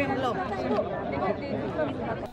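Chatter of several people talking over one another in a crowd, with no single voice standing out.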